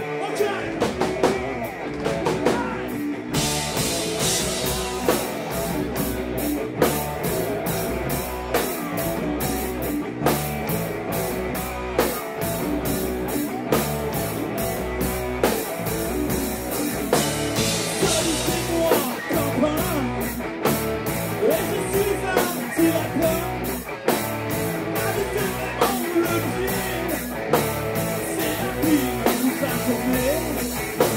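Rock band playing live on electric guitars and a drum kit. It opens on guitar alone, and the drums and cymbals come in about three seconds in with a steady beat.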